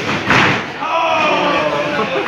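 A wrestler landing hard on the wrestling ring's canvas: one loud slam about a third of a second in, with voices around it.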